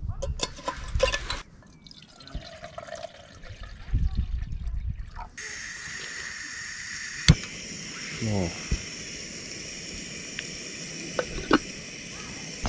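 Water poured into a camping stove's pot, then a portable gas canister stove's burner hissing steadily from about five seconds in, with a single sharp click about two seconds later.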